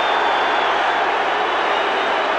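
Basketball arena crowd making a steady, loud, unbroken noise, a reaction to a technical foul just called on a coach.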